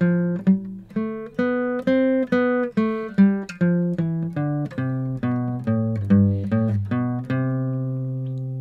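Acoustic guitar playing the C major scale in second position, one picked note at a time at about three notes a second, going up and back down, with the last low note left to ring near the end.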